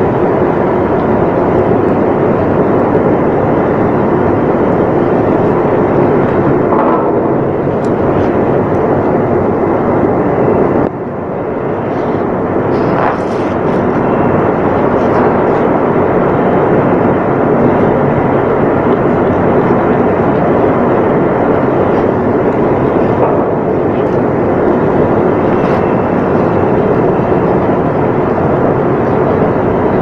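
Loud, steady machinery noise of a ship's pump room, an even mechanical and air rush with no pauses, dipping briefly about eleven seconds in.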